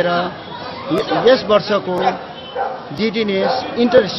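A man talking in a steady flow of speech, with background chatter from people around.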